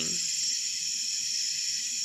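Steady, unbroken chorus of night insects, high-pitched and unchanging.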